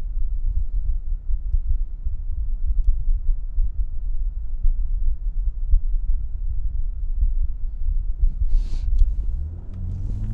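Dinan Stage 3 BMW M235i's big-turbo 3.0-litre straight-six idling steadily at a standstill, a low, even rumble. A brief hiss comes near the end.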